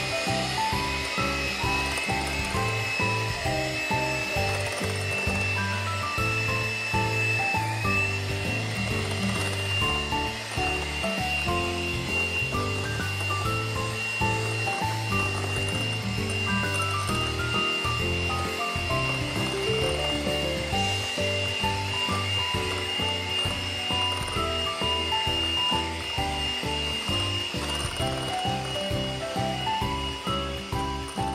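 Electric hand mixer running steadily with a high whine as its beaters whip blackberry espumilla (egg-white meringue); its pitch dips briefly about eight seconds in. Background music with a steady bass plays along.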